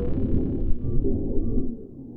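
Deep, rumbling sound-design drone with held low tones, accompanying an animated logo sting. It fades away near the end.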